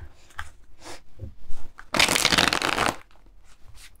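A deck of tarot cards being shuffled by hand. There are a few light clicks of cards at first, then a dense rush of shuffling lasting about a second, starting about two seconds in, and then a few softer clicks.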